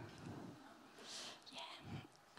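Near silence in a pause of a talk: faint room tone, with a brief soft hiss about a second in.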